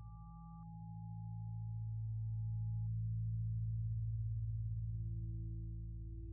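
Meditation drone of steady, pure electronic tones: a low hum of several tones pulsing slightly as they beat against each other, with two higher held tones that cut off, one about half a second in and one about three seconds in, and a new middle tone entering near the end.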